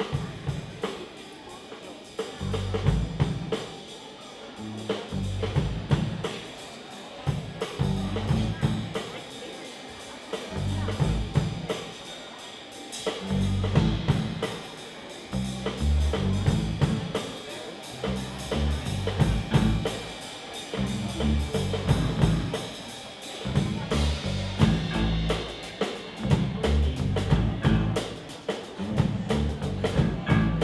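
A live band plays an instrumental with a steady drum-kit beat over low bass notes and keyboard.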